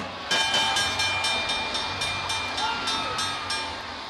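Wrestling ring bell struck rapidly, about four strikes a second for roughly three seconds, its ringing carrying over crowd noise. It signals the end of the match.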